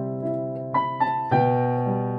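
Electronic keyboard in a piano voice playing a slow, sustained chord that fades, with two higher notes struck about two-thirds of a second in and a new chord with bass struck at about a second and a third.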